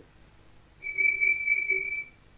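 A single steady, high-pitched whistle-like tone lasting about a second, starting a little under a second in, with a faint lower hum beneath it.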